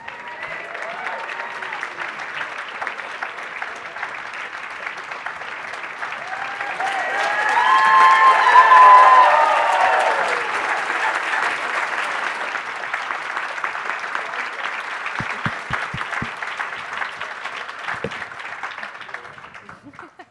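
Large audience applauding to welcome speakers onto the stage. The clapping swells to its loudest about eight to nine seconds in, then holds and dies away near the end.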